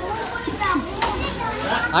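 Children and other people calling out and chattering, several voices overlapping.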